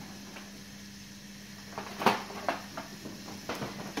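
Kitchen cookware being handled: a few sharp knocks and clicks in the second half, the loudest about two seconds in, over a steady low hum.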